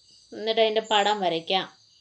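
A person speaking for about a second and a half, over a faint, steady, high-pitched background tone.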